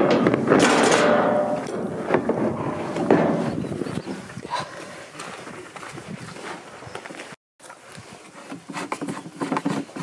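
A plastic fuel jerry can being scraped and bumped as it is lifted down and carried, loudest in the first few seconds. The sound cuts out briefly about seven seconds in, then comes a run of light knocks and clicks from handling a ride-on mower's plastic fuel tank.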